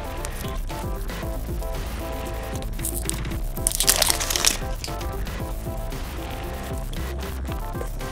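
Background music, with a printed wrapper crinkling in the middle, in two short bursts, as it is torn off a small plastic surprise-egg capsule.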